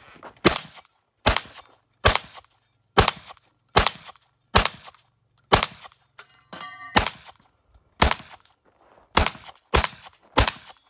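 VR80 12-gauge semi-automatic shotgun firing about a dozen shots at steel spinner targets, roughly one every 0.8 s and quicker near the end. A struck steel target rings briefly between shots in the middle.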